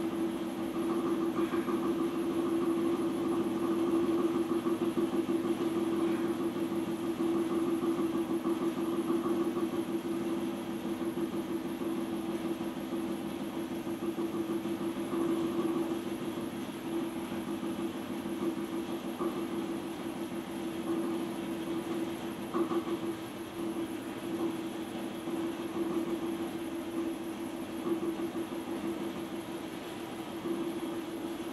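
Electric potter's wheel motor running with a steady hum as the wheel spins a clay form being shaped by hand.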